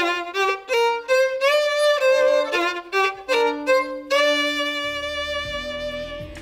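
Solo violin played with the bow: a quick melodic phrase of changing notes with some sliding ornaments, then one long held note for the last couple of seconds.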